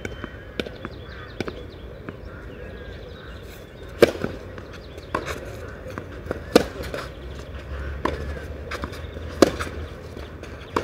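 Tennis balls being struck by rackets in a rally on a clay court: a sharp serve hit about four seconds in, then hits alternating between the two players, the nearer player's shots loudest, roughly every two and a half seconds. A few lighter taps come before the serve.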